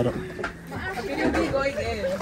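Background chatter of several people talking over one another, quieter than the nearby speech, with a low rumble underneath.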